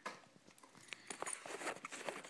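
Small dog's claws clicking on a hardwood floor as it walks: a run of faint, light clicks, thickest from about a second in.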